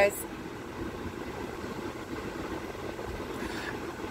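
Steady low hum of a car idling, heard from inside the cabin.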